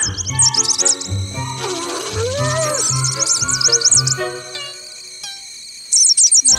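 Cartoon baby birds chirping in quick, high-pitched runs over cheerful background music with a bouncing bass. A swooping tone dips and rises about two seconds in, and the music and chirping thin out about four and a half seconds in.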